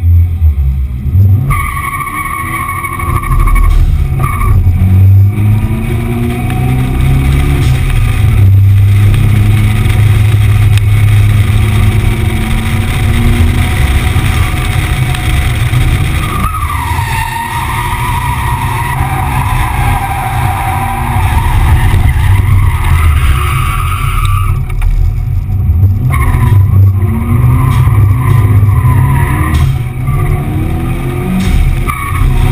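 Drift car engine revving hard with the tyres squealing as the car slides. The squeal comes in three stretches: briefly about two seconds in, a long stretch from about the middle, and again near the end. Heard from a camera mounted on the car's flank.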